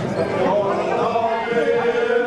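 A group of men's voices singing or chanting together, with footsteps of marchers on the pavement.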